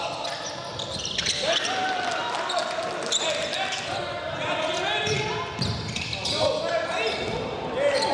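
Live basketball game sound in a gym: sneakers squeaking repeatedly on the hardwood court and a basketball bouncing as it is dribbled, over the hall's reverberant background.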